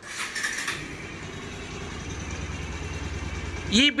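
Freshly rebuilt Bajaj Pulsar 150 DTS-i single-cylinder engine started on the electric starter, then idling with a steady low beat. The mechanic presents this beat as the sign of a properly restored engine with new piston, valves, camshaft and rocker arms.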